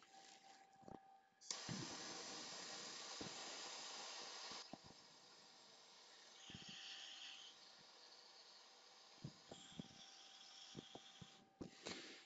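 Handheld gas torch burning with a faint, steady hiss while it heats a TGA sample pan red-hot to burn it clean. The hiss starts suddenly about one and a half seconds in and drops lower about five seconds in. A few light clicks are scattered through it.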